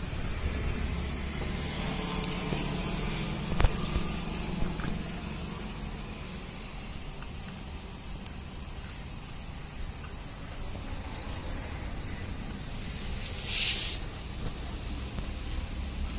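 Small two-stroke petrol sprayer engine idling steadily. A sharp knock comes a few seconds in, and a short hiss near the end.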